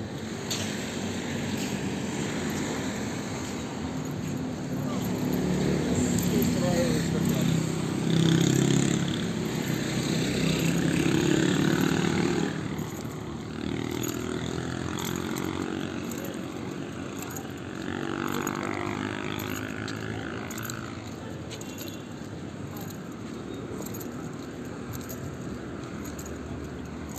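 Street ambience while walking: nearby people talking as they pass, loudest in the first half, over a steady hum of road traffic.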